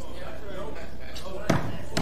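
A single sharp thump about one and a half seconds in, over a steady low hum of room sound with faint voices just before it.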